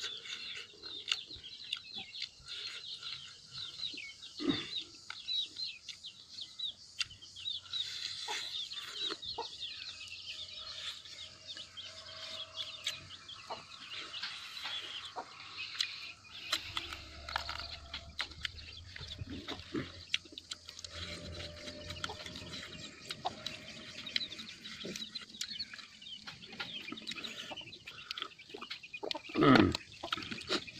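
Chickens clucking and small birds chirping in the background, over the soft clicks and smacks of rice and fish being eaten by hand and chewed. A low steady hum comes in about halfway through and lasts several seconds, and there is a louder knock or bump just before the end.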